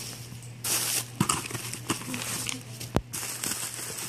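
Packaging rustling and crinkling as a cardboard box is opened and the bubble wrap inside is handled, in irregular bursts, with one sharp click about three seconds in.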